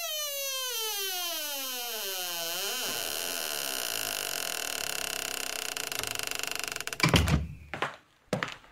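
A door-creak sound effect for a door being closed: a long creaking squeak that falls steadily in pitch for about three seconds, then a rougher, juddering creak, ending in a thunk as the door shuts about seven seconds in.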